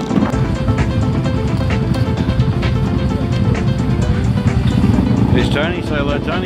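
Background music with a steady beat laid over the low running noise of a motorbike ride; people's voices come in near the end.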